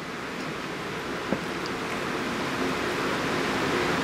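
Steady hiss of room background noise that slowly grows louder, with one faint click a little over a second in.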